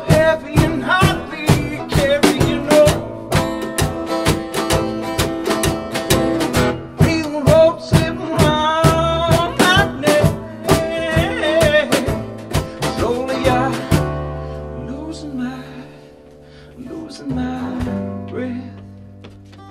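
Live folk song: a man singing over a strummed acoustic guitar. About fourteen seconds in, the strumming stops and the music drops to a quieter passage of held low notes.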